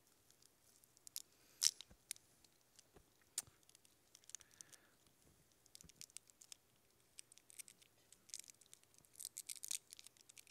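Faint crackling and scattered clicks of a prefilled communion cup's plastic seal being peeled back to get the wafer out. One sharper crackle comes early, and the crinkling grows busier near the end.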